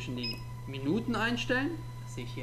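Control buttons on a PCE-MSR 150 magnetic stirrer's digital panel being pressed, with a short high beep near the start, while a man speaks quietly.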